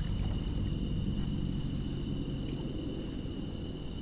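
Chorus of night crickets and other insects trilling steadily, with a low, even background rumble underneath.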